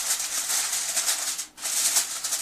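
Aluminum foil crinkling as it is pressed and folded down over the edges of a dish, in two stretches with a short break about one and a half seconds in.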